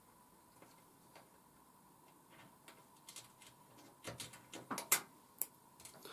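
Stanley knife cutting through a wooden cocktail stick on a tabletop: a few faint clicks, then a cluster of sharper clicks and snaps about four to five seconds in.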